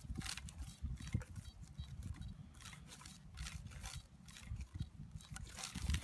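Irregular rustling and crackling of dry straw stubble over a low, uneven rumble.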